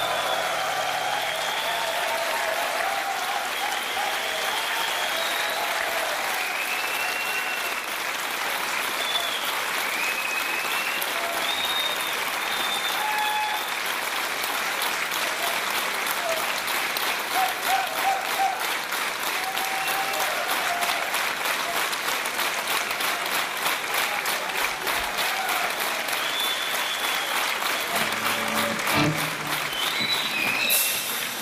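Concert audience applauding steadily after a song, with scattered whistles and cheers through the applause.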